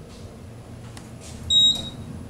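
Otis Gen2 elevator car's electronic chime giving one short, loud, high beep about one and a half seconds in. It marks the car's arrival at the second floor, heard over the low hum of the cab in motion.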